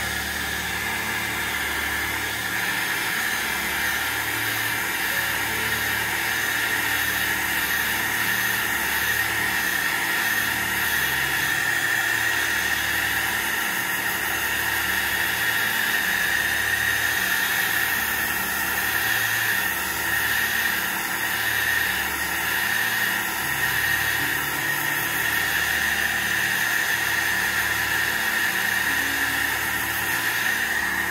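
Handheld heat gun blowing steadily, drying wet watercolour paint.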